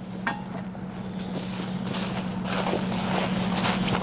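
Bed linen and a cotton blanket rustling as a patient manikin is rolled onto its side, growing louder toward the end, over a steady hum.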